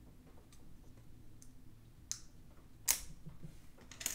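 Small sharp clicks and light taps from a laptop SSD and its metal cover being handled and pulled apart, with the loudest click about three seconds in.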